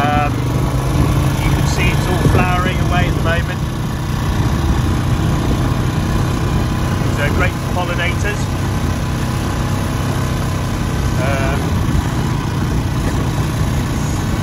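Engine of a small farm vehicle running steadily as it moves slowly across a field.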